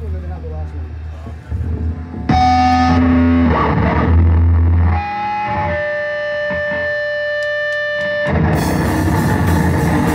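Live band playing through amplifiers: distorted electric guitar over a low amp hum, then loud sustained ringing guitar notes. Near the end the full band with drum kit comes in.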